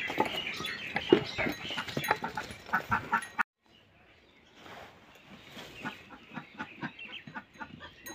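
Rustling and clatter as a plastic tub of chopped silage is set down in straw. After a sudden break near the middle comes a fainter run of quick, soft crunching as a sheep eats the silage from the tub.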